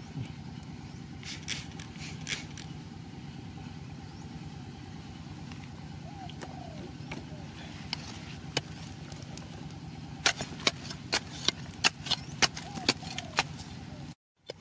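Sharp clicks and taps of a metal digging blade against stony soil, coming in a quick series over the last few seconds, over a steady low hum.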